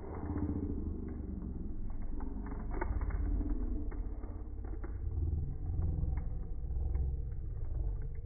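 A steady low rumble of background noise, with scattered faint light clicks from trading cards being handled and leafed through in the hand.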